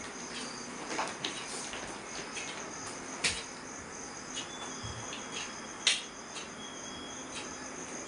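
Steady high-pitched chirring, typical of insects such as crickets, with a few light clicks, the sharpest about three and six seconds in.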